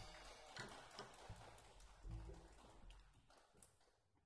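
Near silence after the tune ends: faint, scattered small knocks and clicks from the stage as the players move, fading out near the end.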